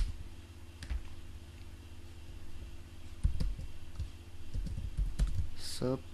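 Typing on a computer keyboard: irregular key clicks, sparse at first and coming quicker from about three seconds in, with a sharper click at the very start.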